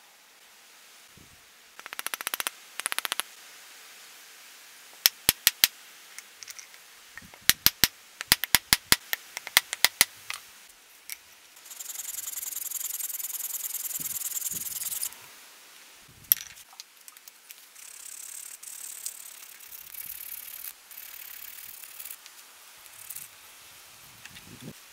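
About a dozen sharp strikes tapping a wooden wedge into the eye of a ball-peen hammer head, after two short bursts of rapid clicking. Then about three seconds of steady hacksaw sawing as the protruding wedge and handle end are cut flush with the head.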